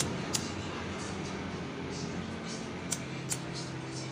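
A few sharp clicks from a lighter and small tools being handled while a lighter flame shrinks heat-shrink tubing over a spliced laptop charger cable. One click comes at the start, another just after, and two more close together near the end, over a steady low hum.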